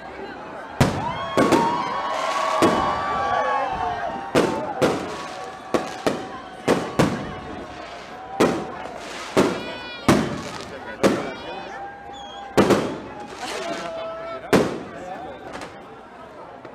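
Fireworks and firecrackers going off: a string of sharp bangs, roughly one a second, with held and gliding whistling tones between them.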